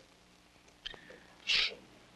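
A short, hissing breath close to a microphone about a second and a half in, after a faint click; the rest is near silence.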